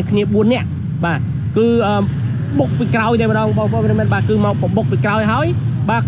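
Voices talking close to the microphone almost throughout, over a steady low rumble of road traffic with cars and motorbikes going by.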